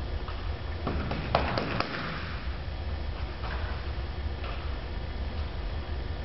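Faint scattered knocks and clicks echoing in a large hall, with a quick cluster about a second and a half in, over a low steady rumble.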